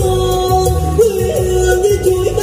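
A male singer singing into a microphone over backing music with a steady beat and percussion: he holds one long note, then breaks into quick vocal turns and ornaments in the second half.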